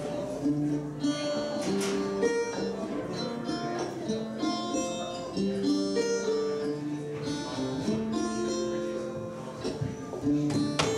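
Acoustic guitar played solo, picking a melody of single ringing notes over low bass notes, as the opening of a song.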